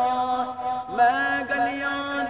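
A man's voice singing Punjabi Sufi kalaam in long, drawn-out melismatic notes. About a second in there is a short break, then a new note with a rising start.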